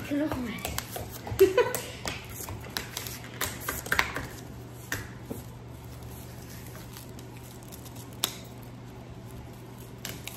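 Scattered clicks, taps and crinkles of applesauce jars being twisted open and straws unwrapped and set in the jars on a table, with brief laughter in the first seconds. After about five seconds it goes mostly quiet, with only an occasional soft click.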